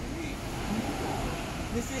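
Steady low rumble of outdoor background noise with faint voices; a spoken word begins near the end.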